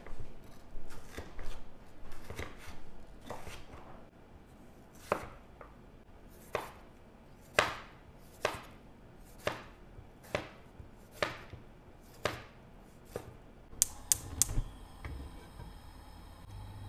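Chef's knife chopping tomatoes on a wooden cutting board: quick, closely spaced cuts at first, then slower single chops about one a second. A few sharp clicks come near the end.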